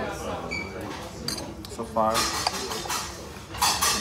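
Metal fork clinking and scraping against a plate and small metal dishes while eating, with a short ringing clink about half a second in and two louder scrapes about two and three and a half seconds in.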